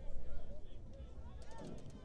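Ambient field-mic sound at a football game: faint, distant voices of players and spectators over a low rumble, with a quick run of faint clicks about a second and a half in.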